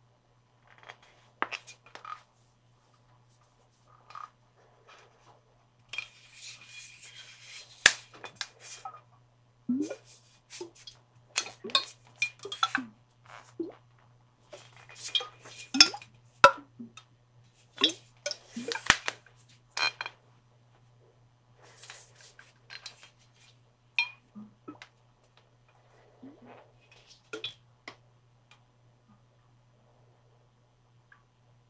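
Water sloshing and splashing inside a clear hard container, with irregular clinks and taps against its sides. It comes in scattered spells with short pauses, busiest in the middle.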